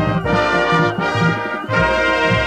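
Marching band brass section playing a run of loud held chords, trumpets and trombones together over a repeating low beat, with brief breaks between the chords.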